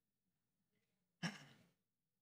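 A single short sigh, a breathy exhale of about half a second that starts sharply a little past the middle and fades; otherwise near silence.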